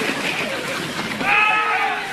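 A man's high-pitched, strained yell of frustration near the end, over a studio audience laughing.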